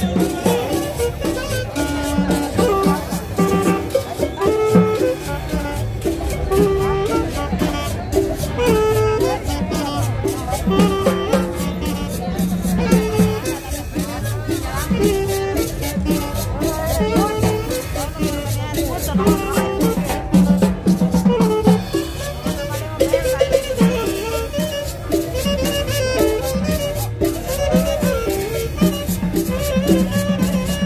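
A small live band plays Latin dance music with a steady beat, led by saxophone and small guitar over hand drums.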